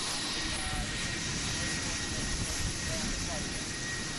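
Steady aircraft engine noise with faint voices underneath.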